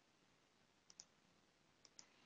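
Near silence broken by two quick double clicks, one pair about a second in and another at the end.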